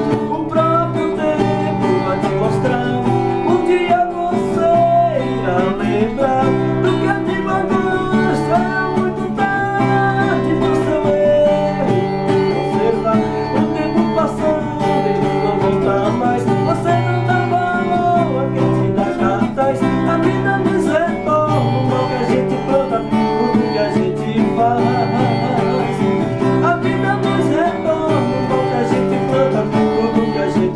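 A man singing a ballad while strumming chords on an acoustic guitar, played steadily throughout.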